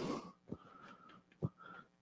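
A breathy exhale, then faint chalk writing on a blackboard: two light taps about half a second and a second and a half in, with a thin squeak of the chalk between them.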